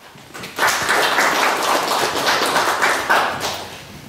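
Audience applauding. The clapping swells in about half a second in and dies away near the end.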